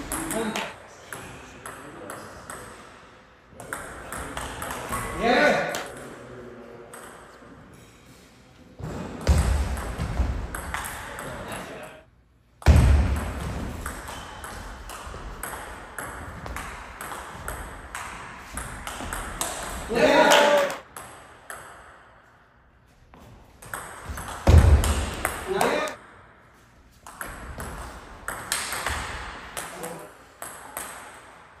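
Table tennis rallies: a plastic ball clicking back and forth off rubber paddles and bouncing on the table in quick alternation, with pauses between points.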